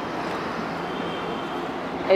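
Steady outdoor street noise: a continuous hum of traffic.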